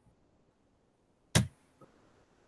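Near silence, broken once about halfway through by a single short, sharp sound.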